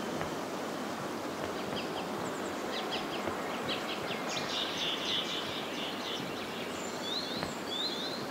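Outdoor ambience: a steady hiss with birds chirping, a run of short high chirps in the middle and a few quick rising chirps near the end.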